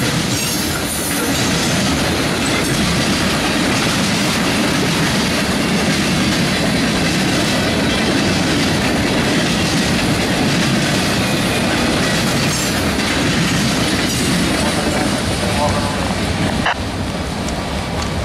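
Freight cars of a passing CSX mixed freight (covered hoppers, tank cars, a centerbeam flatcar and gondolas) rolling by at close range. Their steel wheels make a steady loud rumble and clickety-clack on the rails.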